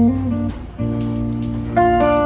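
Electric guitar playing held chords that change about once a second, with no singing.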